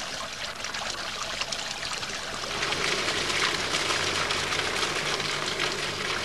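Water splashing and trickling from a tiered stone fountain into its basin, steady and a little louder from about two and a half seconds in.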